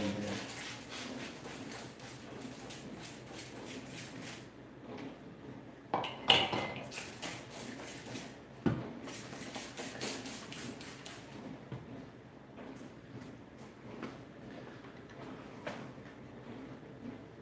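Star San sanitizer sprayed from a trigger spray bottle onto a glass carboy: quick squirts about four a second, in two runs. Between the runs there is a sharp knock, about six seconds in.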